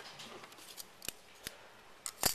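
Faint rustle of paper, then two sharp clicks about a third of a second apart a little past halfway: plastic drafting triangles being handled and lifted off the drawing sheet.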